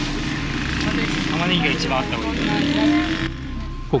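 Busy street ambience: a steady engine hum from passing traffic, with scattered voices of people nearby. The background noise drops away suddenly near the end.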